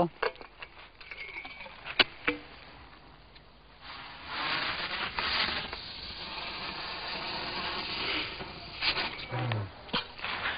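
A teaspoonful of gunpowder firing in a firework mortar: a single sharp click about two seconds in, then about five seconds of steady hissing fizz as the charge burns. The charge is weak and not very powerful.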